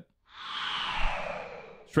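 A soft airy whoosh that swells and then fades away over about a second and a half.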